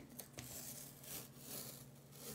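Artist's tape being peeled slowly off heavy cotton watercolour paper, a faint, uneven crackle.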